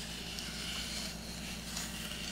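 Faint, even scraping of a wooden spoon stirring wet granulated sugar and corn syrup in a stainless-steel saucepan, over a low steady hum.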